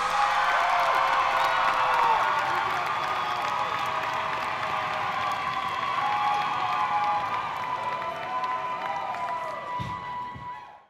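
Theatre audience cheering and applauding, with many high shouts and whoops over it, slowly dying down near the end.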